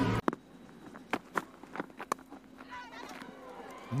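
Open-air cricket ground ambience with scattered sharp knocks and faint distant voices.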